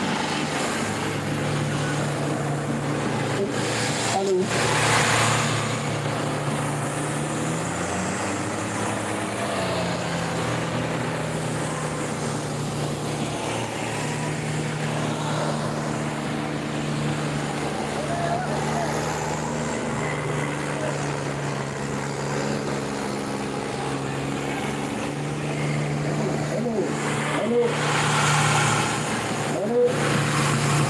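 Two tractor diesel engines, a New Holland 3630 and a smaller blue tractor, running hard and steady under full load as they pull against each other on a chain, with a brief wobble in engine pitch about eight seconds in.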